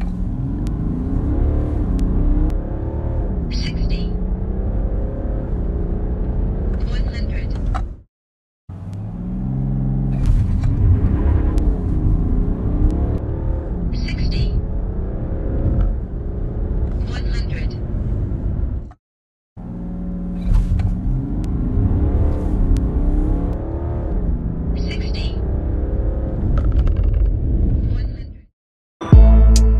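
A BMW 730d's 3.0-litre straight-six turbodiesel, heard inside the cabin, accelerating at full throttle from a launch-control start; its pitch climbs and drops back at each upshift of the 8-speed automatic. Two short silences split it into three separate runs, each with a couple of brief high chirps.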